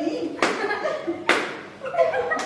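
Two sharp hand slaps on a motorcycle helmet, about a second apart, over children's voices and chuckles.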